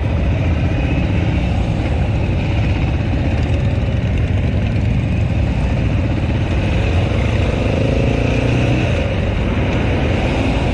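Motorcycle engines running steadily in slow street traffic. Near the end, one engine rises in pitch as it revs and accelerates.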